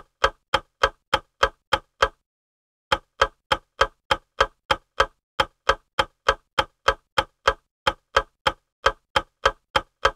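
Clock-ticking sound effect counting down a quiz timer, about three and a half even ticks a second, with a short break about two seconds in.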